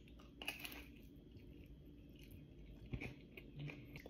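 A person biting into and chewing a bagel sandwich with cream cheese, lox, cucumber and tomato. The sound is faint, with a few soft crunches in the first second and another about three seconds in.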